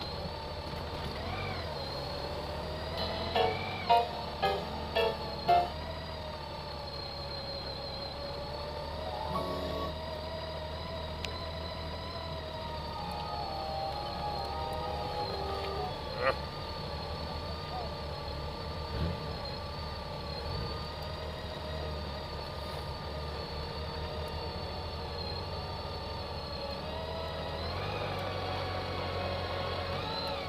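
Honda Gold Wing touring motorcycles running at low speed in a group, a steady engine hum. About three to five seconds in come four short, loud tones a little apart.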